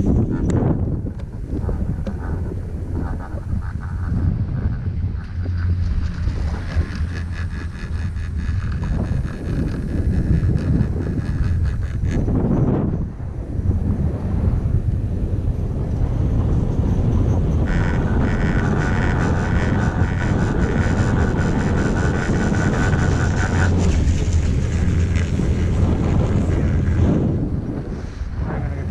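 Steady wind rumble buffeting the camera microphone while riding a chairlift, dipping briefly about halfway through.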